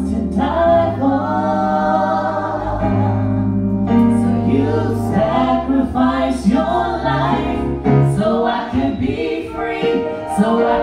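Gospel praise-and-worship singing by a small group of men's and women's voices at microphones, with keyboard accompaniment holding long low bass notes that change about halfway through.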